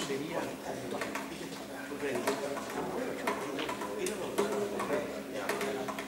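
Indistinct voices talking in a hall, with a few short sharp clicks scattered through.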